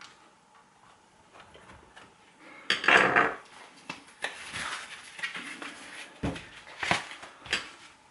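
Hard plastic shower parts handled and knocked against the shower's plastic casing: a rubbing clatter about three seconds in, then scattered sharp clicks and scraping.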